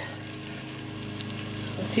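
Battered dandelion flower head deep-frying in hot canola oil, about 350°F, in a stainless steel pot: a steady sizzle with scattered small crackles.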